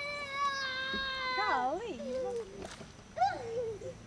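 A young child's wordless voice holding one long high note, then sliding up and down in pitch, with a second short wavering stretch near the end.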